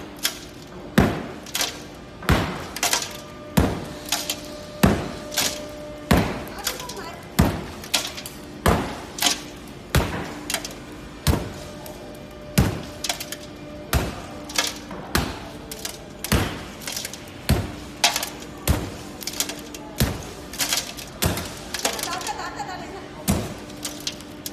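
A hammer strikes a cracked high-security glass display-case panel in a steady rhythm, about one blow every second and a quarter, some twenty in all. Each blow is a sharp knock with a brief crackle of glass, and the crazed pane holds together rather than shattering.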